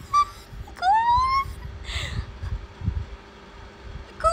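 A young woman's high, drawn-out whining voice without words: one rising glide about a second in, then a short breathy sound near the middle.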